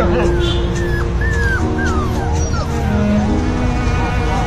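A dog whimpering: several short, high whines that fall in pitch during the first three seconds, over background music with sustained notes.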